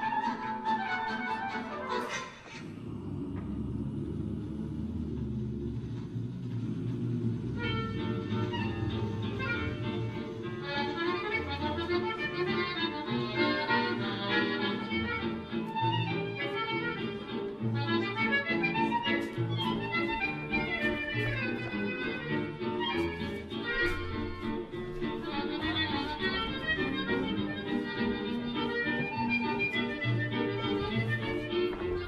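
Instrumental music: a lively tune over a steady bass line, with a brief drop about two seconds in and a busier melody joining at about seven or eight seconds in.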